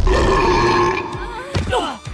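A cartoon monster's loud, drawn-out belch lasting about a second, followed by a few quick falling squeaky sounds.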